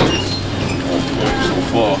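Brief, indistinct voices over a steady low hum of room noise.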